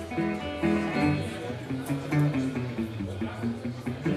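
Metal-bodied resonator guitar played solo, picking a melodic line of separate notes.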